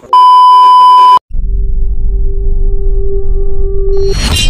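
Television colour-bars test tone: a loud, steady beep for about a second that cuts off suddenly. After a brief gap it is followed by a low rumbling drone with a steady hum over it, the lead-in of a logo intro sound effect.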